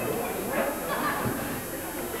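Indistinct voices of football players and spectators, with no clear words.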